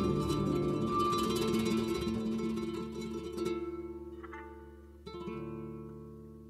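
Gypsy jazz band of violin, acoustic guitars, double bass and drums playing the final bars of a tune. The full band cuts off about three and a half seconds in, leaving notes ringing and fading. A last plucked chord is struck about five seconds in and left to die away.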